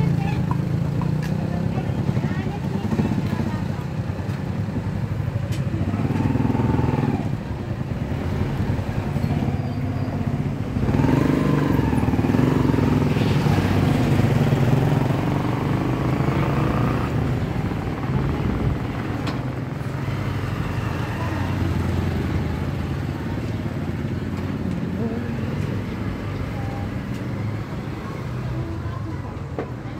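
Motorcycle engines running steadily, with voices talking over them, loudest in the middle of the stretch.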